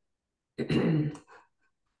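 A person clearing their throat once, about half a second in, followed by a brief softer trailing sound.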